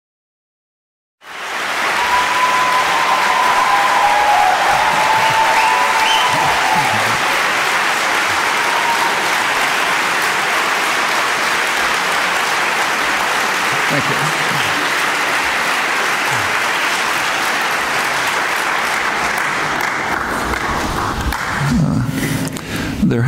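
Lecture-hall audience applauding, starting suddenly about a second in and thinning out near the end.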